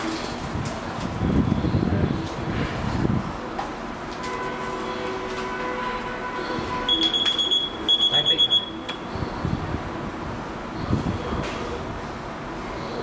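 An electronic alarm beeping: a rapid run of high-pitched beeps, in two quick bursts, about seven seconds in and lasting under two seconds. Low bumping and handling noises come earlier, over a steady equipment hum.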